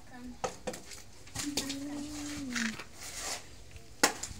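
Hand tools clinking and scraping on mortar and brick: a few sharp knocks in the first two seconds. A long, level voice-like call is held through the middle.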